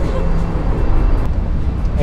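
Low, steady rumble of street traffic from passing vehicles.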